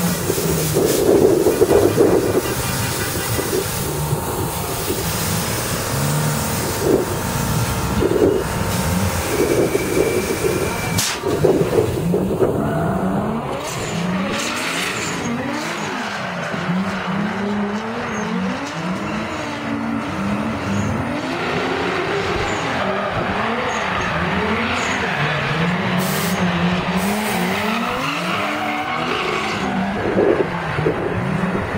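Drift cars, a BMW E36 among them, sliding through a tandem run. Their engines rev up and down over and over as the throttle is worked through the slides, with tyre squeal throughout.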